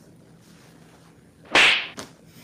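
Quiet room tone, then about one and a half seconds in a single sudden, loud swish that fades within half a second.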